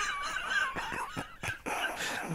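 A person's high-pitched, wavering squeal of laughter, fading out about a second in.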